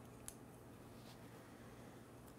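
Near silence: faint room tone with a few soft clicks of knitting needles as stitches are worked, the clearest about a quarter of a second in.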